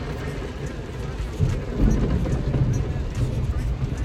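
Heavy rain falling on a vehicle's roof and windows during a thunderstorm, heard from inside the cabin, with a low rumble underneath.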